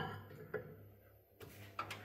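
Mostly quiet, with two faint clicks, about half a second in and near the end, from a cup of water and a microwave oven being handled.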